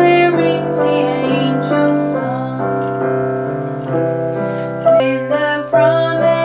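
A song: a woman singing over piano accompaniment, with long held notes.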